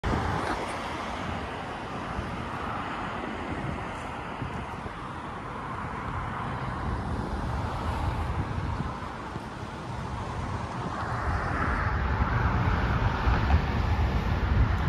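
Steady road traffic noise from cars passing through a busy intersection, a low rumble of tyres and engines that grows louder in the last few seconds.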